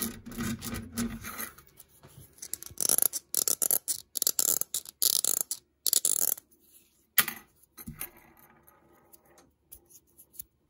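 A pencil rolled and rubbed on a wooden tabletop, then a run of stop-start scratchy rubbing bursts as the pencil is handled, with one sharp click about seven seconds in and fainter rubbing after it.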